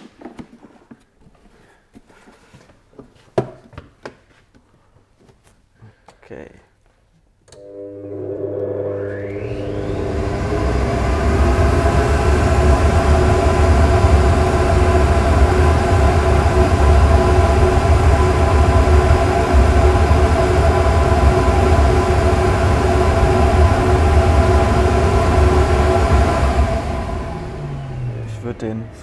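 Flow bench blower motors spinning up with a rising whine, then running steadily at full flow with a deep rush of air and a steady motor whine as they pull air through an airbox and air filter under test. They wind down shortly before the end, after some faint handling clicks before the start.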